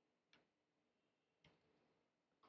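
Near silence: room tone, with two faint clicks about a second apart.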